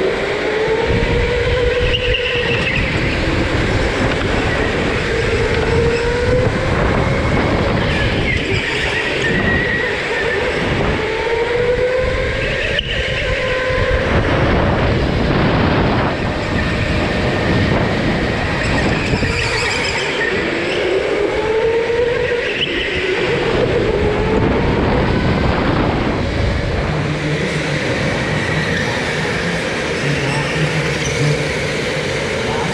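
Go-kart heard from onboard while lapping: its motor whine rises in pitch as it accelerates out of each corner and drops as it slows, repeating every few seconds. A steady rumble of the kart running over the concrete floor sits under it.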